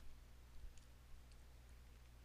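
Near silence: a faint steady low hum of room or recording noise, with a few soft clicks in the first half.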